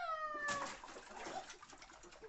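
A toddler's long, high-pitched squeal, falling steadily in pitch and ending about half a second in, followed by quieter sloshing and splashing of bath water in a plastic tub.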